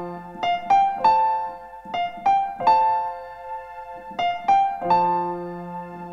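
Piano played in the key of F: a slow melody of single notes struck two or three a second, each ringing and fading, over a few held low bass notes, with a brief lull a little past the middle.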